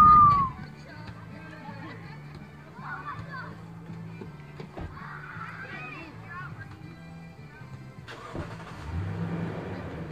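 A loud, high, arching call in the first half-second, the last of a quick series. Then a low steady hum inside a car, with faint distant voices, and a rush of noise that rises about eight seconds in.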